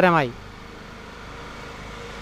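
A man's speech trails off early, then a low, steady engine rumble fills the pause, slowly growing louder.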